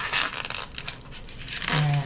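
Plastic wrapping of a ground beef package being torn open and crinkled by gloved hands. The crackling is densest in the first half second, then dies down to softer handling.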